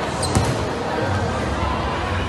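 A rubber dodgeball striking once, a sharp thud about a third of a second in, with a brief high squeak just before it, over the steady noise of a crowd in a large hall.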